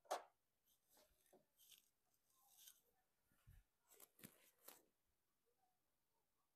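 Faint handling noise from a USB SD card reader being fitted at a TV's rear USB port: a sharp click at the start, then scattered light clicks and plastic rustles, with a low bump about three and a half seconds in.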